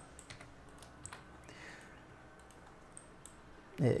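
Faint, scattered light clicks of a computer keyboard and mouse, irregularly spaced across the few seconds.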